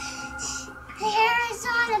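A young girl singing: softly at first, then two short sung phrases from about a second in.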